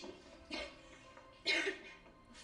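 A woman coughing twice, the second cough louder, over soft background music.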